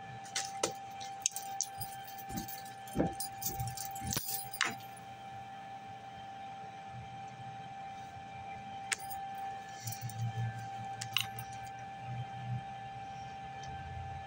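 A run of sharp clicks and metallic clinks, as of small hard objects such as keys being handled, over the first five seconds, with a few more scattered clicks later. A steady high electrical hum runs underneath.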